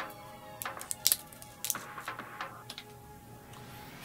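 A handful of small clicks and taps from a plastic pen-tablet stylus being handled while a AAA battery is fitted into its twist-apart barrel, the loudest about a second in. Quiet background music plays under them.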